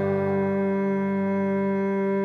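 Backing music between sung lines: a single sustained keyboard chord held steady, with no singing.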